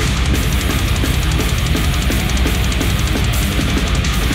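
A metalcore band playing live: distorted electric guitars and bass over fast, dense drumming, loud and unbroken.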